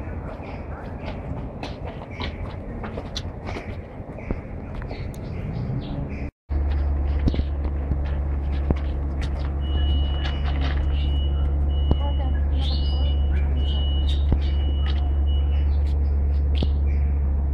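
Indistinct crowd chatter with scattered knocks and clicks. About six seconds in the sound cuts out for a moment, then a loud steady low hum takes over, with a thin high tone that comes and goes in the latter half.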